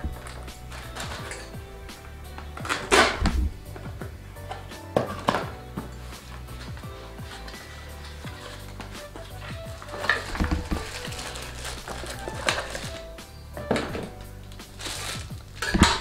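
Cardboard packaging being handled: a box opened and a plastic chopper in a plastic bag lifted out, with a few short knocks and rustles spread through, over quiet background music.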